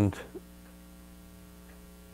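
Faint, steady electrical mains hum under quiet room tone, after a man's voice trails off at the very start.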